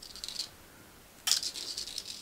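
Fine 0.3 mm wire being drawn through a loop of a 0.6 mm wire frame: a soft, high scratchy rasp of wire sliding over wire, once briefly at the start and again, louder, about a second and a quarter in.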